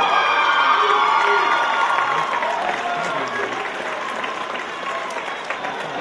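Audience applauding and cheering, loudest at the start and slowly dying down.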